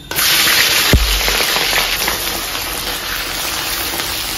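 Sliced onion, ginger and scallion dropped into hot oil in a wok, setting off a sudden loud sizzle that holds steady as they fry. A single knock sounds about a second in.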